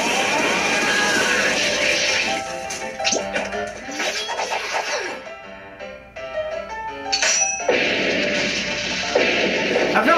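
Anime soundtrack: background music with loud crashing impacts for the first two seconds and again from about eight seconds on. Just past seven seconds comes a short sharp high ring, the sound effect of a sword stroke.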